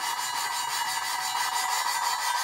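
Valve being hand-lapped into its seat in an aluminium Porsche 996 cylinder head: a suction-cup lapping stick is spun back and forth between the palms, grinding the valve face against the seat through Permatex valve grinding compound. A steady grinding rub, the sound of lapping at the very start, with fresh compound and the seat not yet smoothed.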